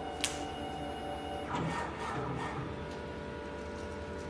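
Automatic cable cutting and stripping machine running: a sharp click just after the start, then its motor-driven feed rollers whirring from about one and a half seconds in, settling into a steady hum of several tones as the cable is fed through.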